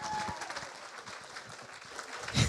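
A roomful of guests applauding, many hands clapping together.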